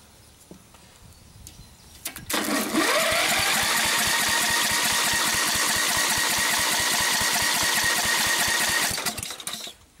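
Briggs & Stratton riding-mower engine cranked by its starter, catching after a moment and revving up, then running steadily with a thin whine before cutting out and dying away near the end. It starts and runs on the newly fitted magneto, a sign that the ignition coil is sparking.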